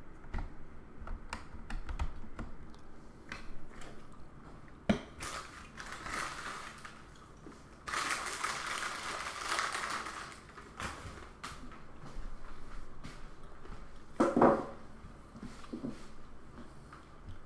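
Handling and movement noises of someone moving about a small room: scattered light clicks and knocks, a rustling noise for a couple of seconds in the middle, and a loud thump near the end.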